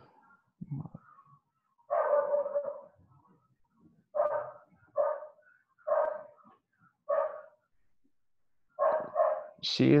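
A dog barking loudly in a string of short barks, roughly one a second, picked up by a video-call participant's open microphone.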